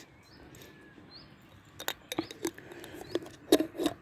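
A cat crunching dry kibble, a few scattered crunches about two seconds in and again near the end.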